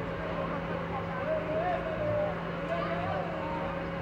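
Inverted steel roller coaster train running along its track overhead, a low rumble under a steady hum, with distant voices mixed in.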